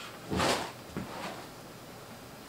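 Golf swing trainer with a white air-resistance panel swished through one swing: a single whoosh that swells and fades about half a second in, followed by a faint tick near one second.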